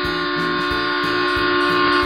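Cartoon train whistle sound effect, one long steady chord-like blast that cuts off suddenly, over children's background music with a steady beat.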